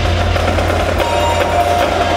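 Indoor percussion ensemble playing: a sustained low rumble with held higher tones over it and one sharp hit about a second in.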